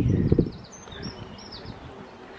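A small songbird chirping, a quick string of short high notes, after a brief low rumble right at the start.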